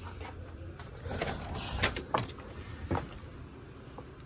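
Footsteps and a few short scuffs and knocks as someone climbs concrete steps onto a porch, over a steady low rumble of outdoor noise.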